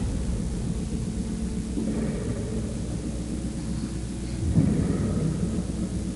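A low, steady rumble with a soft swell about four and a half seconds in.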